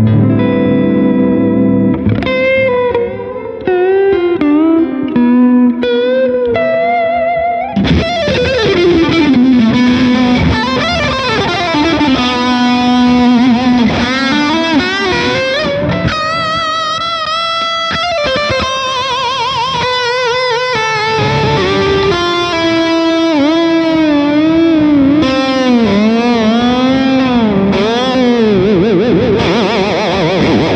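Squier Affinity Jazzmaster electric guitar played through an amp with heavy use of its floating two-pivot tremolo arm: wide dips and swoops in pitch and wobbling vibrato on held notes and chords. The arm is being worked hard to test whether the guitar holds its tuning.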